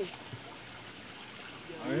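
Steady rush of running water, an even hiss with no rhythm, under the talk; a voice comes in right at the end.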